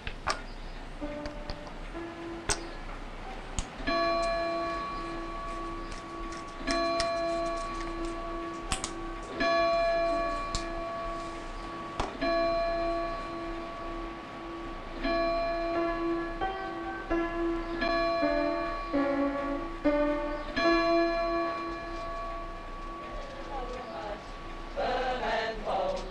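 Mantel clocks chiming: ringing bell tones struck every few seconds, with a short run of different pitches near the middle, over a quick pulsing beat and occasional sharp clicks.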